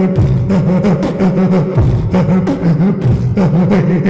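A man beatboxing into a microphone: sharp mouth-made drum clicks about four a second over a low, wavering hummed tone.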